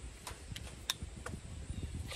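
A few short, sharp clicks as a plastic kayak paddle holder clip is pressed and fitted onto the paddle shaft, the loudest a little under a second in.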